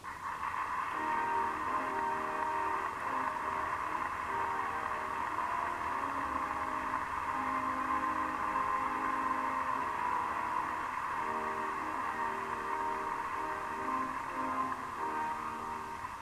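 A band or orchestra plays sustained chords that shift every second or so. The sound is thin and narrow, as on an old film soundtrack.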